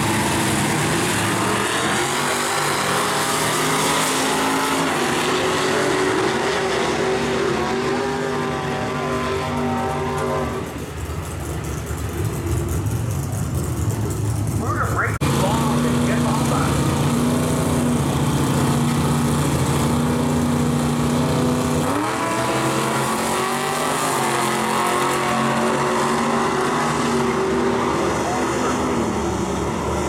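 Drag-racing muscle car engines: one pair sitting at the start line with revs rising and falling, then, after a sudden change about halfway, a second pair holding steady revs. About three-quarters of the way through they launch, the pitch jumping and then climbing and shifting as the cars accelerate away down the strip.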